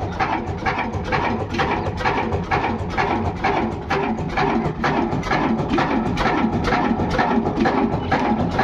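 Old horizontal single-cylinder diesel engine with heavy flywheels running at a steady speed, with an even, rhythmic knocking of about three to four beats a second.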